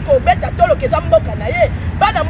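A woman speaking animatedly and with emphasis, over a steady low rumble of street traffic.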